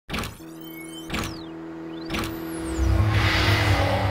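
Electronic logo intro sting: three sharp impact hits about a second apart, laced with falling and rising pitch sweeps and a held tone, then a deep rumble that swells over the last second or so.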